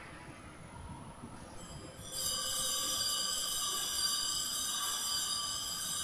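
A steady, high-pitched ringing chord of several held tones comes in suddenly about two seconds in and sustains without fading.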